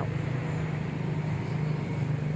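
A motorbike engine idling steadily: a low, even hum.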